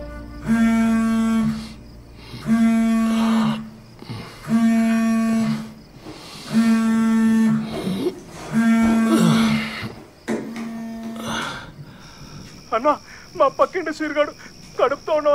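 Phone ringing: a held low tone about a second long, repeating every two seconds six times and stopping about eleven seconds in. A man's voice follows near the end.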